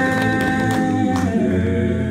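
Male voices singing long held notes in harmony, with acoustic guitar strumming faintly beneath; the chord changes about a second in.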